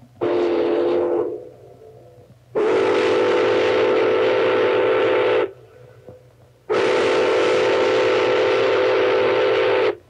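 Steam whistle of Pere Marquette Berkshire No. 1225 blown three times, a short blast then two long ones of about three seconds each, several tones sounding together over a hiss of steam. The locomotive is under steam again for the first time in 22 years after six years of restoration.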